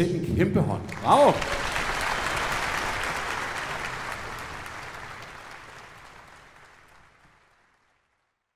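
Concert audience applauding just after the orchestra's final chord. A single voice calls out briefly about a second in. The applause then fades away steadily until it goes silent.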